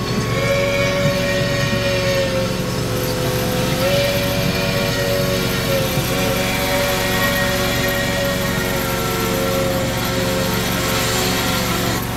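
A long held tone of several pitches sounding together, wavering slightly, over the steady low hum of the ride's train.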